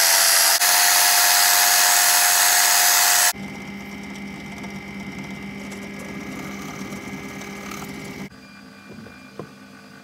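Electric belt sander running, a small piece of wood held against its belt, loud and hissy with a steady whine. About three seconds in, it gives way abruptly to a quieter drill press motor humming as a drill bit goes through thin wood. A few light knocks come near the end.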